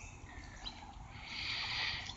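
Quiet outdoor background: a low steady rumble with faint high-pitched birdsong, which grows a little louder in the second half.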